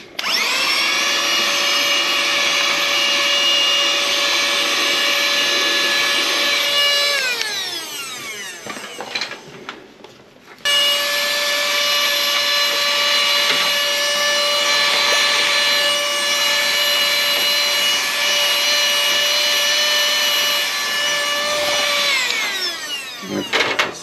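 Cordless Opolar handheld mini vacuum running, its small motor giving a loud, steady high-pitched whine. About seven seconds in it is switched off and winds down with a falling pitch. It starts again abruptly a little after ten seconds, runs steadily, and winds down the same way near the end.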